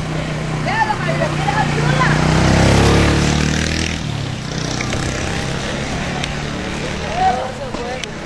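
A motor vehicle engine running, growing louder to a peak about three seconds in and then falling back, with scattered voices of people in the street over it.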